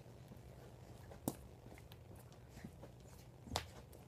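Soft thumps of bare feet on a carpeted floor as a person gets up and steps into place: two clear thumps a couple of seconds apart, with a few fainter taps between them.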